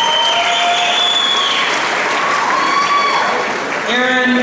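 Audience applauding for a graduate crossing the stage, with a few drawn-out cheers over the clapping.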